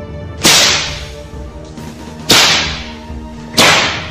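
Whip-crack sound effect: three sharp cracks, about half a second in, near the middle and near the end, each tailing off quickly, over soft background music.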